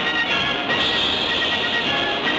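Orchestral film-score music, with a brighter high passage from under a second in to near the end.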